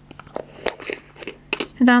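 A plastic screw lid fitted and twisted onto a glass cream jar: a quick run of small clicks and scrapes.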